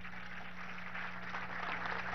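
A pause in the speech, filled with low, even background noise and a steady low hum.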